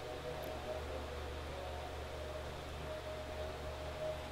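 Room tone: a steady low hum with faint hiss and a thin faint tone, no distinct events.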